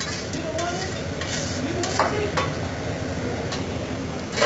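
Metal spatula scraping and tapping on a steel teppanyaki griddle while fried rice sizzles on it, with irregular sharp clinks, the loudest about halfway through.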